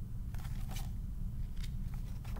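Pages of a picture book being turned and handled: a few short papery crackles and rustles over a steady low hum.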